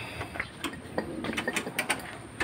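Hand tools clicking and clinking against metal in a car's engine bay: sharp, irregular ticks a few times a second.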